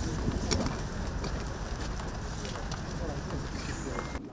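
Outdoor crowd ambience: a steady low rumble with indistinct voices murmuring in the background and a few faint clicks.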